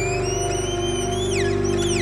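Violin played high in a live jam: a held note sliding slowly upward, then breaking into quick downward swoops about twice a second near the end, over the band's steady sustained chord.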